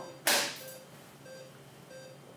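A short rush of air about a quarter second in, fading within half a second, as ventilation is stopped for the tube cuff to be let down. Faint short beeps repeat beneath it.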